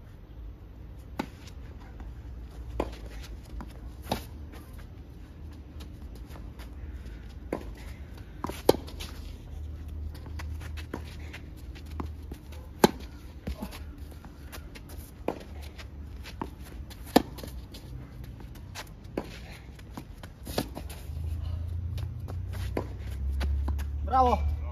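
Tennis ball struck back and forth by racquets in a rally on a clay court: a series of sharp pops about every one to two seconds, some loud and close, others fainter from the far end of the court. A low rumble grows louder over the last few seconds.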